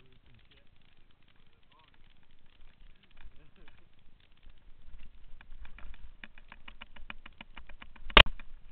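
Mountain bike rattling down a rough dirt trail: rapid clicks and clatter from the chain and frame over bumps, with a low tyre rumble, growing busier and louder about five seconds in as the descent gets faster.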